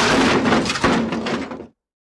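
A loud, noisy edited-in sound effect for the end-card animation, with a sharp hit a little under a second in, cutting off suddenly near the end.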